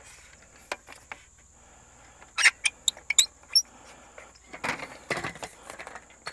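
Scattered clicks and knocks of a telescoping grade rod and its laser receiver being handled and adjusted, with a cluster of sharp clicks and a few short high chirps in the middle and more knocks near the end, over a faint steady high tone.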